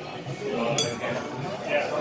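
Metal knife and fork clinking against a ceramic dinner plate while cutting food, with one sharp ringing clink a little under a second in.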